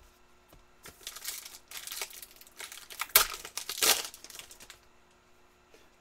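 A Panini Prizm basketball card pack's wrapper being torn open and crinkled by hand: crackling from about a second in until near the end, with two louder sharp crackles past the middle.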